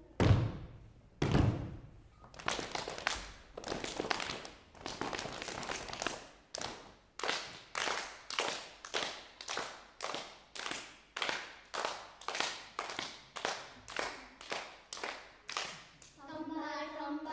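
A group of children stamping on a wooden stage floor, two heavy thumps about a second apart, then clapping their hands in a steady rhythm of about two claps a second.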